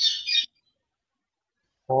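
High-pitched bird chirping that stops about half a second in, followed by quiet and then a man's voice starting a word at the very end.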